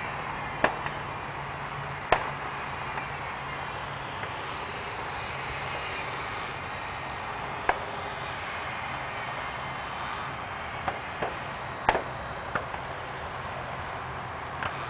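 Electric RC model T-28 Trojan flying, its motor and propeller giving a faint high whine that slowly shifts in pitch over a steady hiss. Several sharp clicks stand out above it, the loudest about two seconds in and near twelve seconds.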